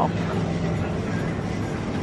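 Supermarket background noise: a steady low hum with a faint rumble underneath.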